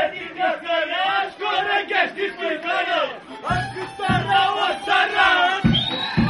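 Folk dancers shouting rhythmic calls together, Romanian strigături, in quick repeated phrases; low thuds join in about halfway through.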